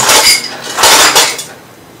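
Ice cubes clattering out of a refrigerator door dispenser into a cup, in two loud bursts, the second longer and ending about one and a half seconds in.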